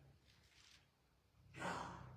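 A man's short, breathy sigh about one and a half seconds in, after a quiet pause, with a fainter breath before it.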